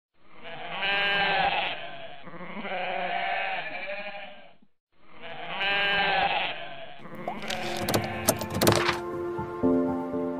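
A goat bleating: three long wavering bleats, the last a near copy of the first. From about seven seconds in come sharp clicks and whooshing effects, and a short intro jingle begins near the end.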